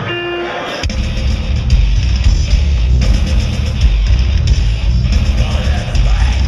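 Live metal trio starting a song: a short held guitar note, then under a second in the full band comes in with distorted electric guitar, bass and rapid drum and cymbal hits.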